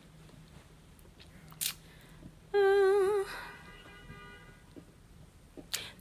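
A person humming one short, wavering note about two and a half seconds in, loud for under a second and then trailing off softly. Around it the room is quiet, with a faint steady low hum and a single click.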